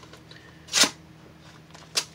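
A paper mail envelope being handled and opened: one short, loud rasp of paper about a second in, then a sharp tap near the end.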